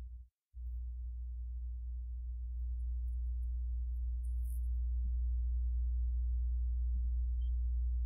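Steady low electrical hum with a few faint overtones. It starts about half a second in after a brief cut-out, then holds steady, growing slightly louder.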